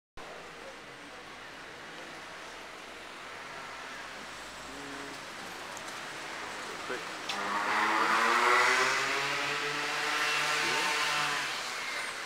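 A car drives past close by on a wet street. Its engine and tyre noise swell from about seven seconds in, peak about a second and a half later, then fade, over a steady background of street hiss.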